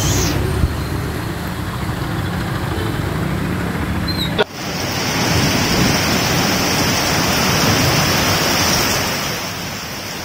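Heavy rain and storm wind making a steady rushing noise on the microphone. About four and a half seconds in it cuts abruptly to another stretch of the same rain and wind.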